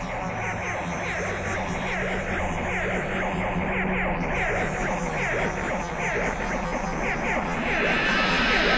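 Psychedelic trance played live over the PA in a quieter breakdown: short falling synth chirps repeat two or three times a second over a sustained low drone.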